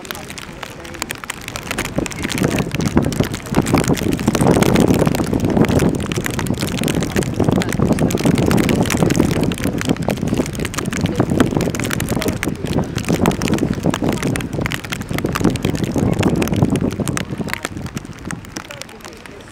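Mostly people talking close to the microphone, with outdoor background noise.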